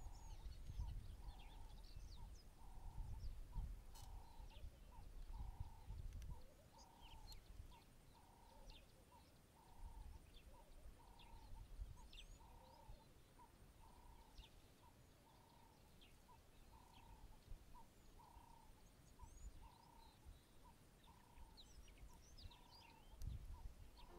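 Faint outdoor birdsong: a soft call repeated about twice a second throughout, with scattered short high chirps. A low rumble sits under the first few seconds and again near the end.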